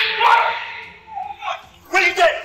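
A dog barking several times in short, loud bursts.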